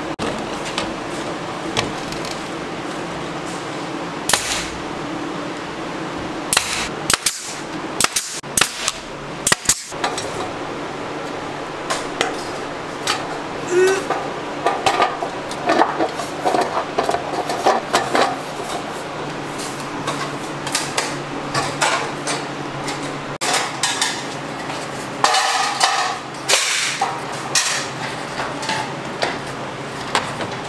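Hand snips cutting wire mesh and metal flashing: an irregular run of sharp clicks and metallic clanks, with the sheet metal and mesh rattling as they are handled.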